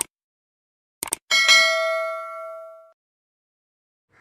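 Subscribe-button animation sound effect. A mouse click sounds at the start and two quick clicks about a second in. Then a bright notification-bell ding rings out and fades over about a second and a half.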